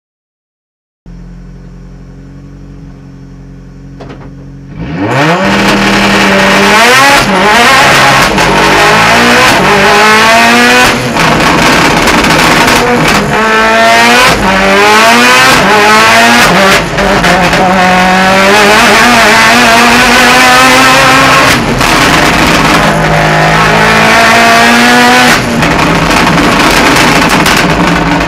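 Mitsubishi Lancer race car engine heard from inside the cockpit: it idles steadily, then about five seconds in launches at full throttle and revs hard. For the rest of the run the pitch climbs and falls over and over as the gears change, staying loud throughout.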